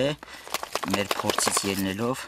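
A man's voice speaking, with light crackling and rustling of potting soil handled by hand between the words.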